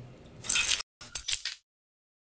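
A short metallic jingle lasting under half a second, followed by a few light clicks, then the sound cuts out to silence.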